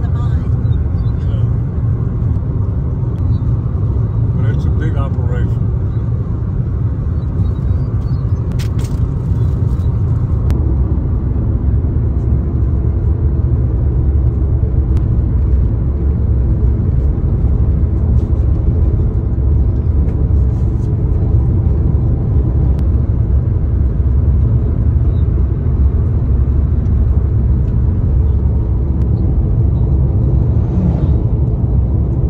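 Steady low road and engine rumble heard from inside a vehicle cruising on a highway, growing a little louder about ten seconds in.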